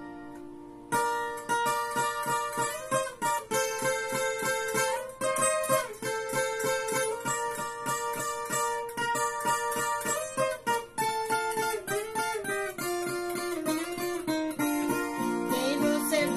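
Viola caipira, the ten-string Brazilian folk guitar, fingerpicked solo as an instrumental introduction. A chord rings and fades, then a picked melody starts about a second in and runs on in quick successive notes over the instrument's ringing paired strings.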